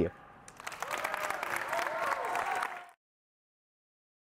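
Audience applauding, with a few voices calling out among the clapping; it cuts off suddenly about three seconds in.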